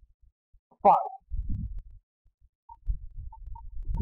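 A man's voice says one word, followed by a few faint, low, muffled thumps.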